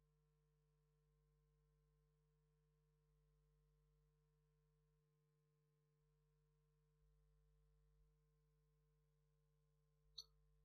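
Near silence, with only a very faint steady hum of a few unchanging tones.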